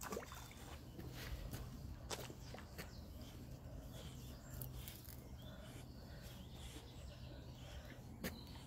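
Faint outdoor ambience with a steady low hum and a few light clicks.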